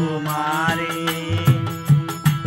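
Live Bengali folk song: a man's voice sliding up into a held note over a harmonium's steady chord, with a bowed violin, and two sharp drum strikes near the end.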